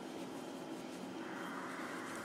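Faint, steady background noise with no distinct events, a little stronger from just past halfway.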